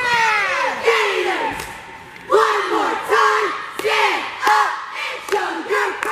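High school cheer squad shouting a sign cheer in unison while performing. First comes a drawn-out falling shout, then from about two seconds in a run of short, sharp shouted calls in a steady rhythm, about two a second.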